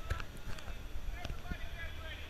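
Faint, scattered voices from people some way off, with a low wind rumble on the microphone.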